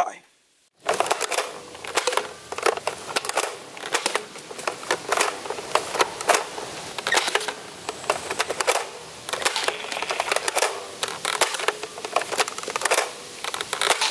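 Nerf N-Strike Firefly blaster being worked by hand: a dense run of irregular plastic clicks and clacks from its mechanism, starting about a second in.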